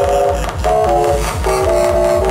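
Live electronic music: synthesizer chords shifting every third to half second over a fast, steady low beat.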